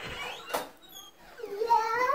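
A single sharp click about half a second in, then a young child's high-pitched voice calling out, rising and falling, from about a second and a half in.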